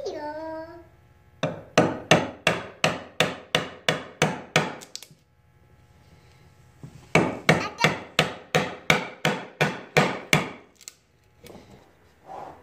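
Wooden mallet striking a chisel into a wooden beam to chop out a mortise: two runs of about a dozen quick, evenly spaced blows each, around three a second, with a short pause between them. A young child's brief high voice sounds at the very start.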